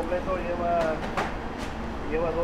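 A man's voice murmuring without clear words over a steady low hum, with three soft clicks about a second in.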